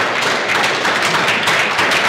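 Audience applauding: many hands clapping at once in a dense, even patter.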